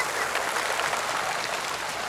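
Fountain water jets splashing down onto a wet pavement, a steady rain-like spatter that eases a little as the jets drop lower.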